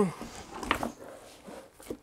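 Raw split-flat turkey being flipped over on a plastic cutting board: wet skin and meat sliding and slapping on the board, with a sharper knock about a third of the way in and a short one near the end.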